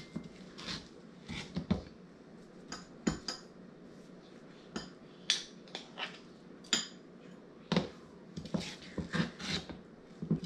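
A metal spoon scooping ice cream out of a plastic pint container into a bowl: scattered clinks and scrapes of spoon against container and bowl, a dozen or so over several seconds with short pauses between.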